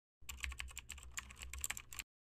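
A fast, irregular run of sharp clicks, like typing, over a low hum; it starts a moment in and cuts off suddenly at the end.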